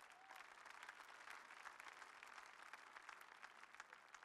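Faint applause from a large congregation: many hands clapping at once in a dense, steady patter that fades out at the end.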